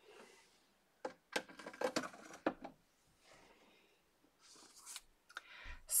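Plastic markers being handled, set down and picked up: a cluster of light clicks and knocks, then a few more just before the end.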